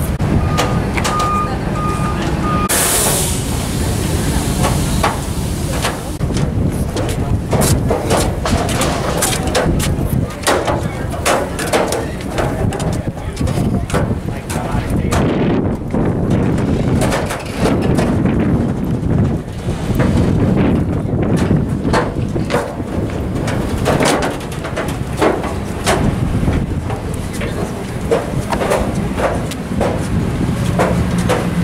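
Background chatter of a crowd walking to board a boat, with footsteps and knocks on the pier and gangway over a steady low rumble. A brief hiss sounds about three seconds in.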